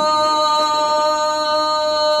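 A woman's voice holding one long, steady sung note in the loud, open-throated 'iz vika' (shouted) style of Serbian folk singing from around Arilje, unaccompanied.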